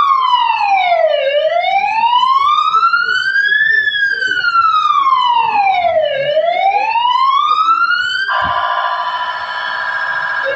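Ambulance siren sounding a slow wail, rising and falling on a cycle of about five seconds. About eight seconds in, it switches abruptly to a fast warble.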